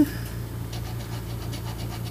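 Metal scratcher faintly rubbing the coating off a scratch-off lottery ticket in a few short strokes, over a steady low hum.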